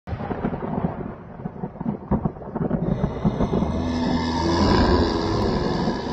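Thunder sound effect for an intro: a crackling, rumbling roll, joined about three seconds in by a swelling, fuller layer with a few held low tones as an eerie musical sting builds.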